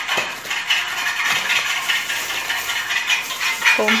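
Thin plastic grocery bag rustling and crinkling as it is handled, in a quick irregular run of small crackles.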